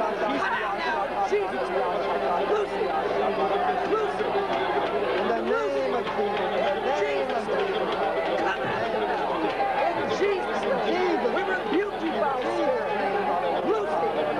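A group of people praying aloud in tongues all at once: many voices overlapping into a steady babble of unintelligible syllables.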